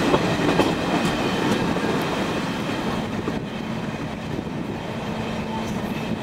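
Train wheels running on track, heard from an open coach window: sharp clicks over rail joints and points in the first couple of seconds, then steady rolling noise with a faint low hum.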